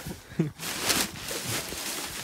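Tall weeds and grass rustling and brushing as someone walks through them, after a brief laugh at the start.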